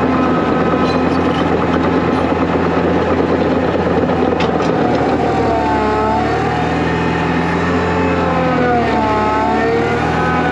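Caterpillar 953 track loader running steadily with its diesel engine under load as the bucket pushes into a dirt pile. From about five seconds in, a whine wavers up and down in pitch over the engine.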